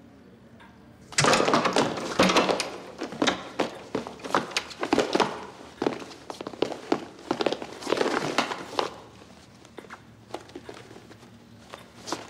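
A loud run of knocks, thuds and shuffling footsteps on a hard floor as people come into a room, starting about a second in and dying down after about nine seconds.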